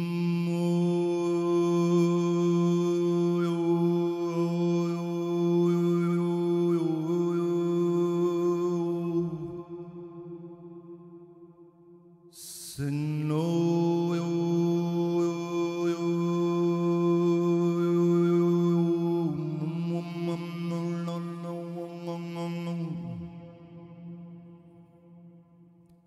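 A man's voice chanting a long, held low note on one steady pitch, a meditative vocal drone whose vowel colour shifts while the pitch stays level. The note fades out about halfway through, a short intake of breath follows, and a second long note on the same pitch is held until it fades near the end.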